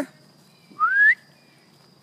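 A person's short, single rising whistle, calling a dog to come.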